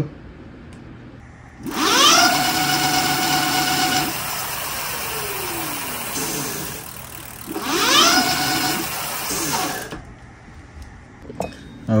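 Electric hub motor of a Seeker 24 fat-tyre e-bike, spun up twice with the wheel off the ground, the first test run of its freshly shunt-modded controller. Each time the motor whine rises quickly in pitch and holds. After the first run it winds down slowly as the wheel coasts, and the second run stops abruptly.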